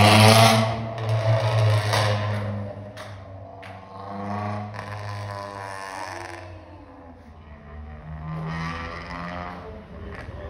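Car engines and exhausts revving and pulling away, echoing in a car park: a drawn-out pitched engine note that rises and falls in three swells, loudest at the start, over a steady low drone, with two sharp clicks a few seconds in.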